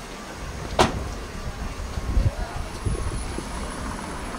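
Street ambience: a steady low rumble with faint voices of passers-by, and one sharp knock about a second in.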